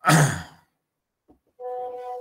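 A man sighs audibly at the start, a breathy, partly voiced exhale. About a second and a half in, a steady hummed tone begins.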